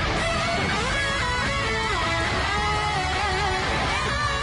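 Heavy metal electric guitar lead playing a melody over a backing track, with held notes, pitch bends and wide vibrato.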